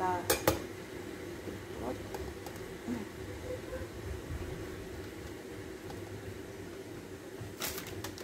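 A block of cheese grated on a metal four-sided box grater, a soft repeated scraping, with a couple of sharp knocks at the start and another near the end, over a steady low hum.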